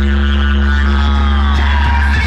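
Loud electronic dance music from a DJ sound system with a heavy, sustained bass drone. In the second half a high tone slides steadily downward in pitch.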